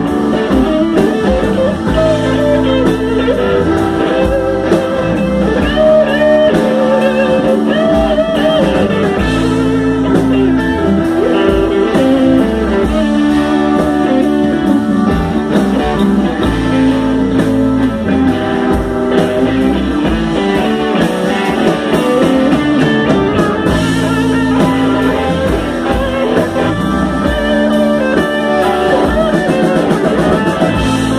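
A soul band playing live: electric guitars, bass and drum kit, with bending guitar notes over a steady groove.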